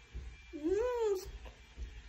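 A toddler's single short, high-pitched vocal sound, rising and then falling in pitch, about half a second in, made while she eats.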